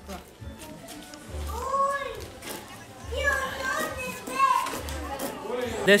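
High-pitched children's voices calling out over background music with a slow, deep beat that repeats about every second and a half.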